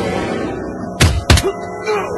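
Two heavy punch sound effects about a third of a second apart, a second in, over the film's background score.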